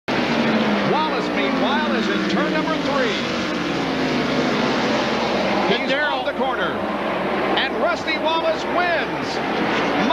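Engines of a field of NASCAR Cup stock cars (pushrod V8s) racing, many engine notes overlapping, their pitch repeatedly rising and falling as the cars lift off and accelerate through the corners and pass by.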